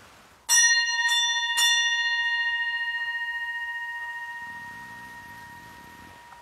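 Altar bell struck three times, about half a second apart, each stroke ringing on with a clear tone that slowly fades. It is the bell rung at the elevation of the chalice during the consecration at Mass.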